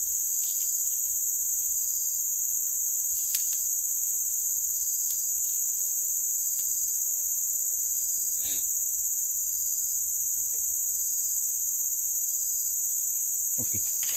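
Steady, high-pitched insect chorus that holds at one level throughout, with a couple of faint short ticks.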